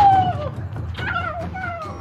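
A loud hit at the very start, then three high, yelping cries that each slide down in pitch, the first the loudest and longest.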